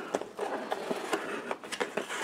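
Hands handling a small white cardboard box, reaching into it and folding its lid shut: light cardboard scrapes and a few small taps.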